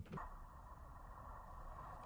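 Near silence: a faint, steady low rumble and hiss.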